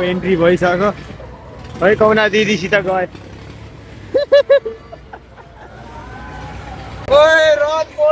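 Voices talking and calling out in short bursts, one loud, high call near the end, over a low steady rumble of fairground machinery.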